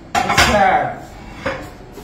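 Dishes clattering at a kitchen sink: a loud clatter of plates or pans knocking together just after the start, then a lighter knock about a second and a half in.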